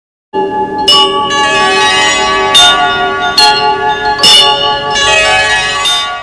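Intro jingle of layered, ringing bell-like chime tones that starts a moment in, with four short, bright noisy accents cutting through it.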